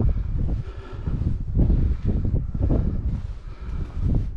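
Wind buffeting the microphone, a loud irregular low rumble that swells and drops in gusts.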